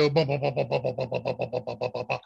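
A man's voice making a rapid stuttering sound at one steady pitch, about ten pulses a second. It imitates a Raspberry Pi CPU's clock speed jumping up and down as it thermally throttles near its temperature limit.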